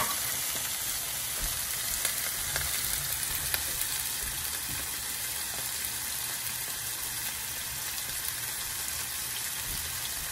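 Shrimp and chopped garlic frying in hot oil in a frying pan: a steady sizzle, with a sharp clink right at the start and a few small pops over the first few seconds.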